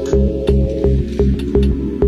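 Electronic dance music from a DJ mix: a steady four-on-the-floor kick drum at about two beats a second under a bass line, with short hi-hat ticks between the beats.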